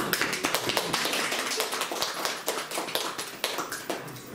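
Small audience applauding: many quick, overlapping claps that thin out toward the end.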